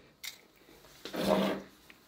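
A small retractable tape measure: a short click, then a brief rattling zip about a second in as the tape reels back into its case.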